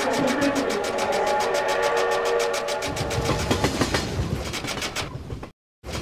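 Split-flap departure-board sound effect: a fast, even clatter of flaps, about ten clicks a second, over held musical tones, with a deep rumble joining about halfway through. It cuts off suddenly near the end, and a short burst of clatter follows.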